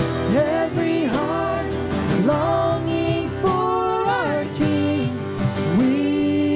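A live worship band playing a song: sung vocals carrying a melody over acoustic and electric guitars and drums.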